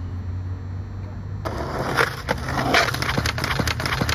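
Skateboard wheels rolling on rough asphalt, starting suddenly about a second and a half in, then a run of sharp clacks and knocks as the board hits a concrete curb and the skater slams off it on a failed trick.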